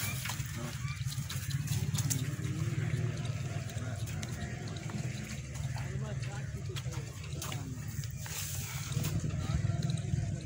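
Indistinct voices in the background over a steady low rumble, with a few scattered clicks.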